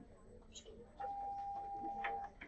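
School intercom alert tone: a single steady beep lasting a little over a second, starting about halfway through, that signals an announcement from the office over the classroom speaker.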